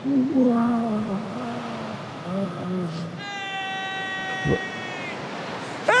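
A man's drawn-out voice from the TV show, wavering and sliding in pitch. About three seconds in, a steady high note with overtones is held for about two seconds, with a soft low thump partway through.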